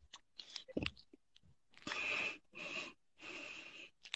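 Faint, breathy, wheezing laughter from a woman: three short wheezy breaths in the second half, with a few small clicks before them.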